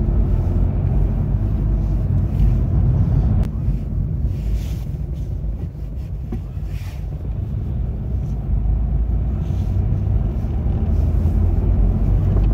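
Car engine and road noise heard from inside the cabin while driving: a steady low rumble that eases off slightly about halfway through, then builds again.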